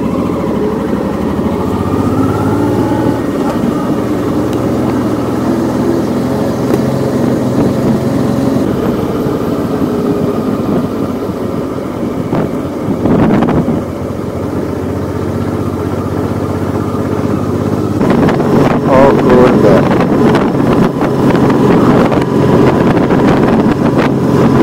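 Touring motorcycle engine running steadily under way, with wind buffeting the microphone, which grows louder and gustier near the end.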